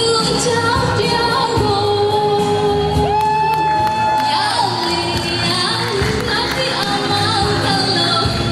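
A woman singing into a microphone over pop backing music, drawing out long held notes.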